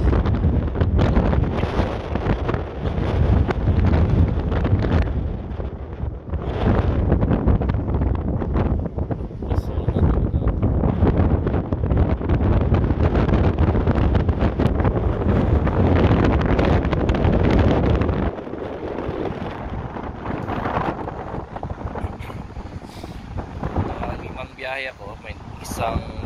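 Loud, gusty wind buffeting the phone's microphone, rumbling and uneven, easing sharply about eighteen seconds in.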